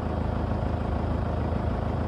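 Car engine running steadily, a low hum heard from inside the cabin.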